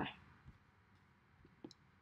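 The end of a spoken 'bye', then near silence with a few faint computer-mouse clicks, about half a second and a second and a half in.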